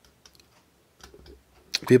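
Faint, scattered light clicks and taps as a small 1/64 diecast model truck is handled, in a short pause before speech resumes near the end.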